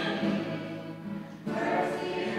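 Two female voices singing a hymn together, holding a long note that fades away, then starting a new phrase about one and a half seconds in.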